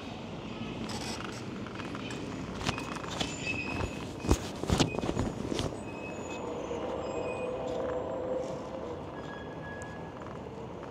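EUY electric bike ridden along a cracked asphalt path: steady rolling and wind noise, with a cluster of sharp clicks and knocks from about three to six seconds in as the bike rattles over the rough surface.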